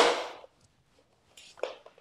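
A single sharp knock or impact right at the start, ringing out over about half a second, then near silence with a faint brief sound about a second and a half in.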